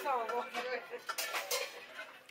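A short moan that falls in pitch at the start, from someone reeling from a mouthful of king chili, then the murmur of other voices and a few light clatters.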